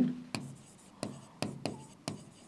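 Chalk writing on a blackboard: about five short taps and scrapes as letters are stroked onto the board.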